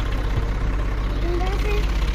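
Tractor's diesel engine idling with a steady, rapid low chugging.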